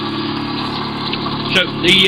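Homemade magnet pulse motor running, its rotor magnets tripping reed switches, with a steady hum of several low tones.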